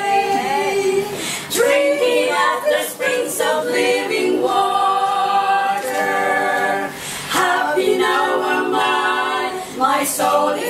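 A quartet of women singing a hymn a cappella in close harmony, the voices moving together through phrases and holding long chords.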